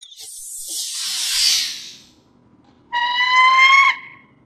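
Logo sound effects: a whoosh of noise that swells for about a second and a half and fades, then, after a short pause, a bright pitched tone rising slightly in pitch for about a second and cutting off sharply.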